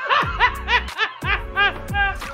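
A woman laughing hard, a quick run of short ha's with brief breaks between them.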